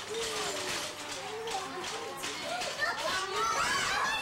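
A group of young children chattering and calling out at play, several high voices overlapping, growing busier toward the end.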